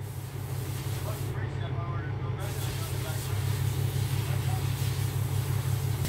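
A steady low hum, like a motor or engine running, with a faint murmur of a voice about a second and a half in.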